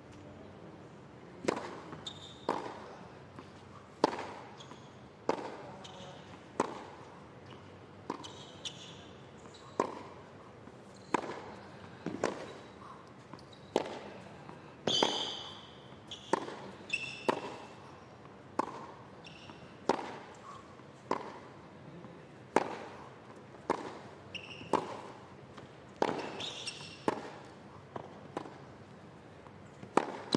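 Tennis ball struck back and forth by rackets in a long rally on a hard court, one crisp hit about every second and a quarter throughout.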